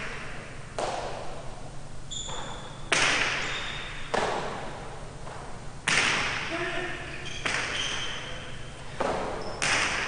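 Jai alai ball (pelota) striking the walls and floor of the fronton during a rally: about eight sharp cracks, one every second or so, each with a long echo in the hall. Brief high squeaks come between them.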